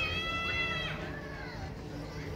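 A high-pitched human voice holding one long call that breaks off about a second in, over a low background murmur.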